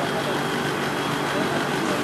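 Steady outdoor background noise: an even hiss with a faint constant hum under it.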